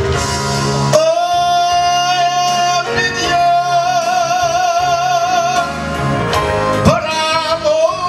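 A man singing a slow gospel song over backing music. About a second in he holds one long note with a wavering vibrato for several seconds, then moves into a new phrase near the end.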